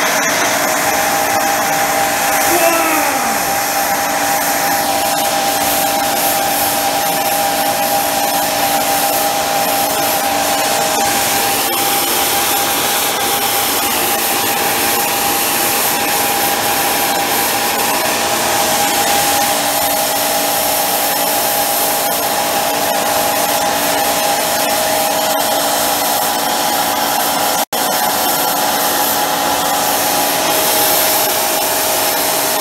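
Micro burner running steadily: a loud, even rush of burning fuel and air with a steady high whine through it. A short falling whistle comes about three seconds in, and the sound cuts out for an instant near the end.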